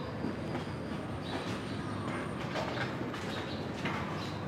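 Wheelchair wheels rolling steadily over a hard floor, with faint light clicks and a thin high squeak during the first half.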